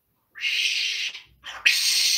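African grey parrot giving two harsh, hissy squawks of under a second each, the second louder than the first.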